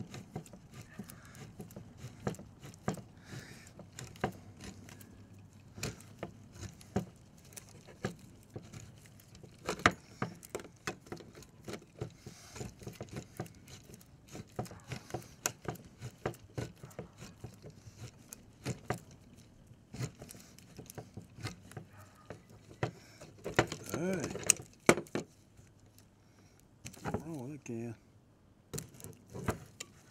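Manual hand-crank can opener cutting around the rim of a steel food can: a long run of small, uneven clicks as the crank is turned.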